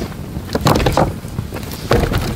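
Wind rumbling on the microphone over a small campfire, with a rustling scrape about half a second in and a sharp crackling pop near the end.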